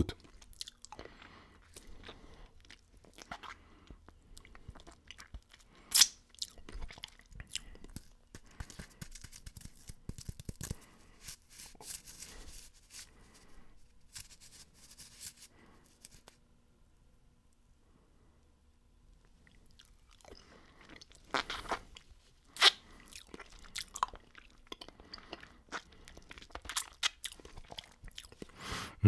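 Close-miked crunching and chewing of a hard candy lollipop: scattered crackles and clicks from the mouth. There is a louder crunch about six seconds in, a quiet pause of a few seconds past the middle, then a cluster of louder crunches.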